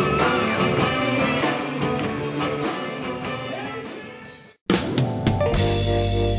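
Live blues band with horns playing: trumpet, saxophone, electric guitar and drum kit. The music fades out over about four seconds to a brief silence, then a different recording with saxophone and horns cuts in abruptly near the end.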